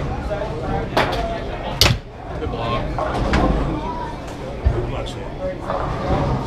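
Foosball table in play: sharp cracks of the ball struck by the rod-mounted men and hitting the table, two loud ones in the first two seconds, then lighter knocks, over room chatter.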